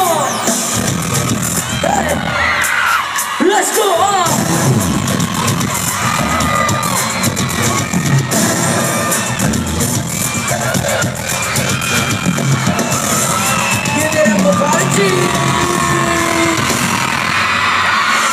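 Loud live pop dance track played over arena speakers, caught on a phone in the audience, with the crowd screaming and cheering over it.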